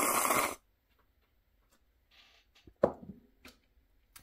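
A loud slurp of someone sipping coffee from a cup, lasting about half a second at the start. Then it is mostly quiet, with a few faint clicks and a short sound near three seconds.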